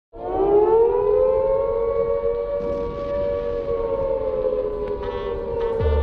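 Air-raid siren wail opening a song: it starts suddenly, rises over the first second, then holds and sags slowly. A deep bass hit comes in near the end as the beat starts.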